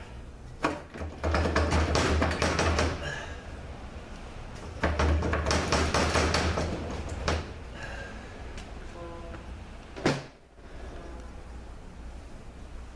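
Metal tools and parts rattling and knocking inside a 4T45E transmission case as it is worked on by hand, in two bursts of a couple of seconds each, then one sharp knock about ten seconds in.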